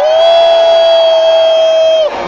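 A man's amplified voice holding one long shouted note through the PA, steady in pitch after a slight rise at the start. It is the MC drawing out his call of "ruido" to get the crowd to make noise.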